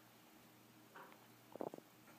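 Dry-erase marker on a whiteboard while numbers are written: a sharp tap at the start, a brief scratch about a second in, and a quick run of short clicks and squeaks just after that, over near silence.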